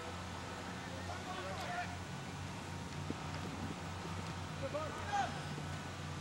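Open-air soccer field ambience over a steady low hum, with faint distant shouts from players on the pitch about a second and a half in and again near five seconds.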